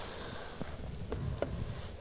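Low wind rumble on the microphone, with a few faint clicks and rustles of snowy dry grass as a hunter reaches down into it to pick up an arrow.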